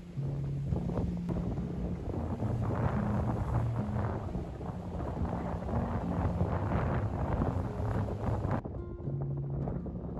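Soft background music with held low notes, over wind rushing on the microphone and sea waves washing against a rocky shore. The wind and surf noise cuts off about eight and a half seconds in, leaving the music.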